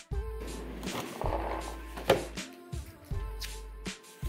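Background hip-hop beat, with the paper and cardboard wrapping of a parcel being torn away and rustling over the first two seconds, and one sharp crack about two seconds in.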